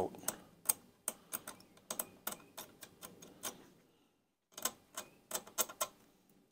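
Dental pick scraping and picking latex paint off a painted-over brass hinge to expose the brass screw heads: an irregular run of small scratchy clicks, with a brief pause before the last two seconds.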